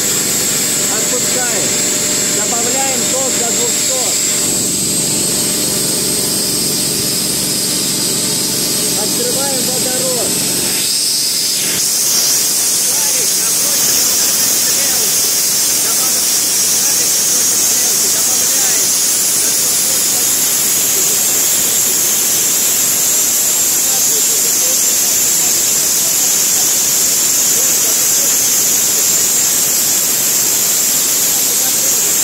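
Plasma spray gun running: a loud, steady hiss that steps up, louder and higher, about eleven seconds in and holds there.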